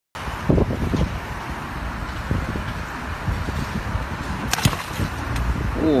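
Rumble and hiss of wind on a phone microphone, with knocks of the phone being handled against the wall in the first second and two sharp clicks about four and a half seconds in.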